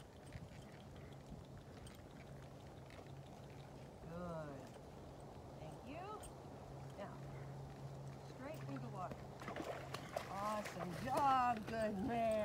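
A woman's voice, indistinct and distant, speaking in short phrases that come more often and louder near the end, over a steady low hum.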